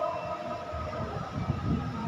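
The last sung note of a Quran recitation in maqam Saba fades out with echo through the PA, followed by low, uneven rumbling background noise from the gathering. A faint steady low hum begins near the end.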